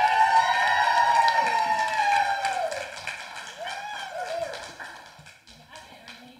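A child's long, high-pitched squeal, held for about three seconds and then falling away, followed by a second shorter squeal about four seconds in, from a girl being dunked in the baptism tank's water.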